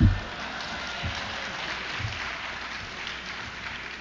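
An audience applauding steadily.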